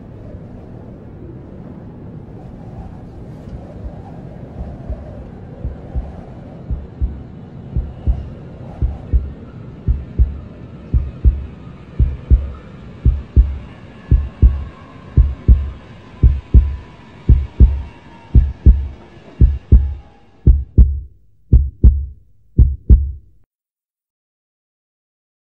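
Heartbeat sound effect: low double thumps about once a second, growing steadily louder over a low rumbling bed, with faint held high tones joining partway through. The beats break up and stop suddenly near the end.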